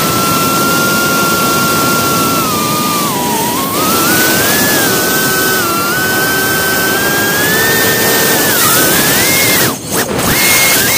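Motor whine of a small radio-controlled aircraft heard from its onboard camera, a single high whine whose pitch rises and falls with the throttle, over a rush of wind. Just before the end the sound dips briefly and then comes back at a higher pitch.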